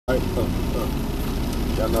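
Vehicle engine running, heard inside the cab as a steady low rumble; a man's voice starts near the end.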